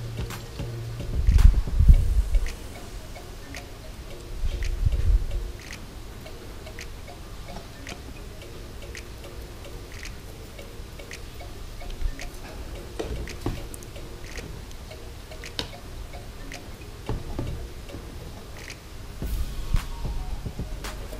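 Scattered light clicks of long metal tweezers tapping the glass tank and plastic tray as small plantlets are pushed into the gravel substrate, over quiet background music. Two low thumps, about a second in and around five seconds in.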